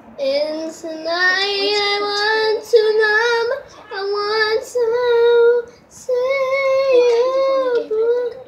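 A young girl singing her own made-up song unaccompanied, holding long notes in about four phrases with short breaks between them.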